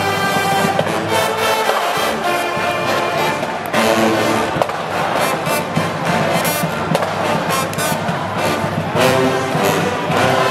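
College pep band playing loudly: sousaphones, trombones and saxophones with a bass drum, a full brass tune. Drum strokes grow denser and stronger about four seconds in.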